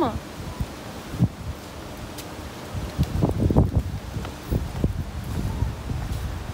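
Wind buffeting the microphone outdoors, with rustling and low rumbling gusts that are strongest about halfway through.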